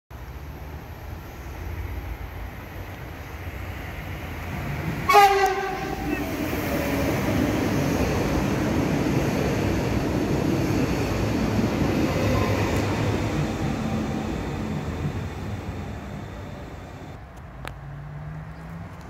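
Electric passenger train sounds one short horn blast about five seconds in, then passes close at speed: a broad rumble of wheels on rails that swells, holds for several seconds and fades away.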